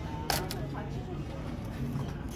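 Two quick, sharp clicks about a quarter of a second apart, over faint background voices.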